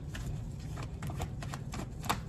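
A tarot deck being shuffled or handled in the hands: a quick, irregular run of soft card clicks and flicks, several a second.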